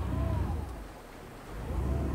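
Low, uneven rumble of wind buffeting the microphone aboard a small boat under way, fading about a second in and building again near the end.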